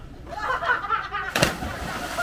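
A person jumping off a pier platform into the sea: one loud splash as they hit the water about one and a half seconds in, followed by the hiss of falling spray. People's voices call out just before the splash.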